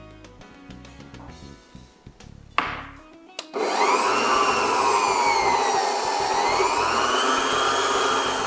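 Electric stand mixer starting up about three and a half seconds in and running loud, beating cream cheese and butter in a stainless steel bowl. Its motor whine dips in pitch and then climbs back up.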